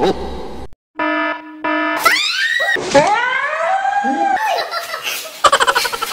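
Two short buzzer-like tones, then a woman shrieking and crying out in fright at the unseen thing she touches inside the box, her voice sliding up and down in pitch; short bursts of laughter near the end.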